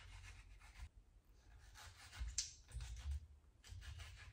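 A knife cutting a mango on a plastic cutting board: a run of faint scraping strokes, the sharpest a little after the middle, with a few soft knocks of the knife and fruit on the board.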